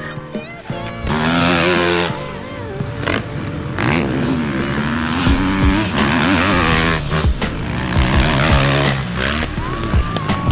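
A 250cc four-stroke motocross bike revving up and down as it is ridden around a dirt track, its pitch rising and falling repeatedly, with background music.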